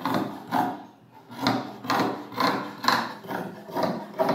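Long tailor's shears cutting through cloth on a tabletop, a rasping snip about twice a second as the blades close along the cut.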